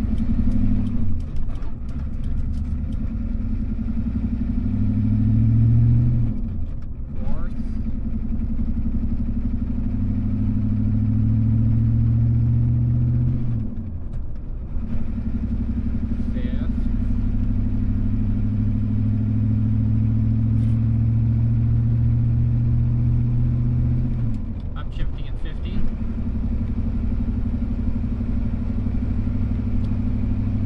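1988 Ford F-250's 7.3-litre IDI V8 diesel, warmed up, pulling through a 0-60 run, heard inside the cab. The engine note climbs, drops at each of three gear changes, and climbs again.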